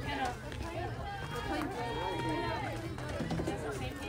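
Several nearby voices talking and calling out in a sing-song way, with one long held note about halfway through.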